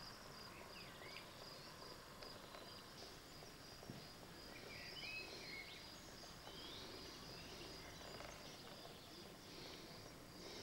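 Faint outdoor ambience: a steady high chirring of insects, with a few short bird chirps.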